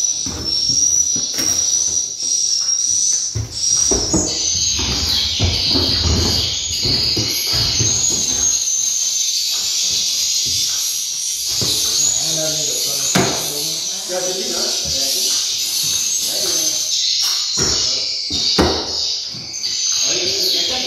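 Dense high-pitched chirping of swiftlets filling a swiftlet house, with a thin steady whistle for the first few seconds before the chirping thickens. Low knocks and indistinct voices sound underneath.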